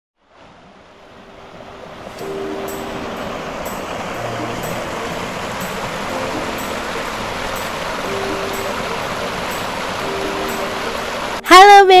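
A shallow, rocky river rushing steadily over boulders, fading in over the first two seconds. A loud voice begins speaking just before the end.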